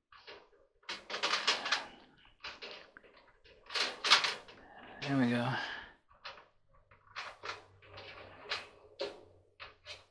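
Clothes dryer's coiled wire heating element and its snap-on keepers being handled and fitted into a sheet-metal heater pan: short, irregular metal rattles, scrapes and clicks. There is a brief murmured voice about five seconds in.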